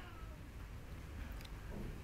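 A cat meowing faintly in the background.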